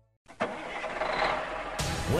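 An engine sound effect for an animated tow truck. After a brief silence it starts up about a quarter second in, runs as a steady rough noise, and surges louder near the end.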